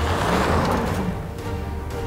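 Ram pickup truck pulling away on a dirt road, its rear tyres spinning and spraying dirt in a rush of noise that fades within about a second, over a low engine rumble. Background music plays underneath.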